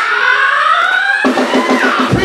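Live music from a drum kit and an electronic keyboard. A rising pitched line runs through the first half, and the sound changes abruptly a little past halfway into a steadier rhythmic pattern.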